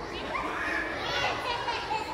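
Several children's voices overlapping, with no clear words.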